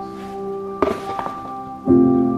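Background music of sustained, steady notes, with a single thunk a little under a second in and a louder new chord starting near the end.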